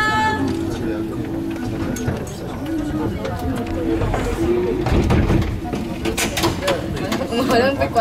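People talking in a crowded passenger car that carries them up the hill, with the low rumble of the car under the voices and a few sharp knocks about six to seven seconds in.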